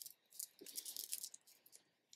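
Faint rattling clicks and rustling as hands fluff a short synthetic wig on the head, the beads of a long necklace and bracelets clicking together with the movement; the clicks come thickest in the middle and thin out near the end.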